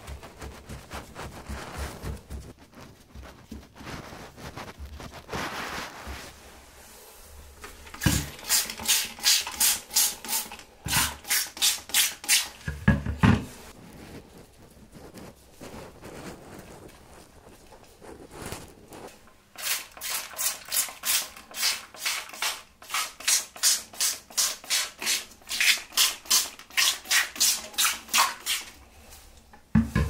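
Trigger spray bottle squirting bleach solution onto paper towel laid over shower sealant: quick hissing squirts about three a second, in two runs, the second longer, with light handling of the wet paper between them.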